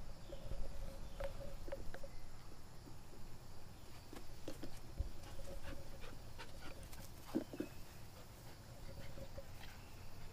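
Puppy panting while it plays, with short scuffs and taps as it paws and bites at a rubber ball on grass.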